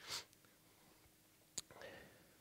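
Near silence: a man's faint whispering and breath on a headset microphone, with one sharp click about a second and a half in.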